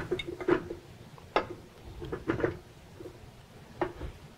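A handful of separate metal knocks and clinks as a tilt-head stand mixer's bowl and beater attachment are handled and fitted in place.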